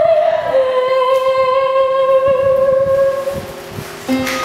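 A teenage girl's solo singing voice holding the long final note of a show tune, stepping down to a lower pitch about half a second in, with a slight vibrato, and fading away near the end.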